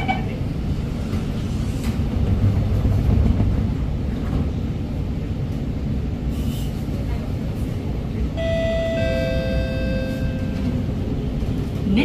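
Interior of an Alstom MOVIA R151 metro car: steady low rumble with a louder low hum a few seconds in as the doors shut, then, about eight seconds in, the SiC-VVVF traction inverter sounds a set of steady whining tones that step down to a lower pitch as the train starts to move.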